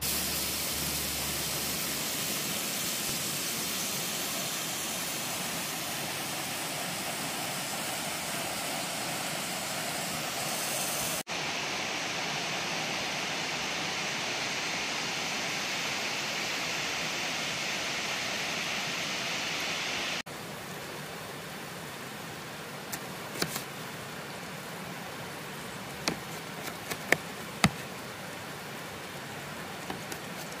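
Bacon sizzling steadily in a cast-iron grill pan, then, after a cut about 11 seconds in, the brighter steady rush of a river. From about 20 seconds on a quieter flowing-water hiss runs under a scatter of sharp ticks as a knife slices a tomato against a plate.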